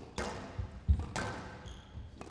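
Squash rally: the ball being struck by rackets and hitting the walls in several sharp hits, the loudest about a second in, with brief squeaks of court shoes near the end.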